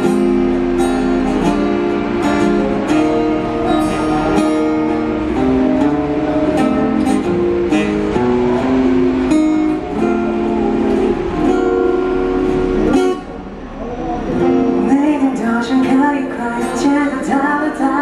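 Live acoustic guitar playing an instrumental passage of chords with a regular strummed pulse. The music dips briefly about 13 seconds in, and a voice comes in over the playing near the end.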